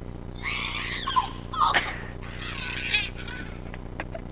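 Girls' high-pitched shrieking laughter in about three bursts over roughly three seconds.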